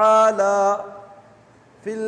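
A man's voice chanting Arabic recitation in long held notes. The last note ends under a second in and fades away slowly, and the voice starts again briefly near the end.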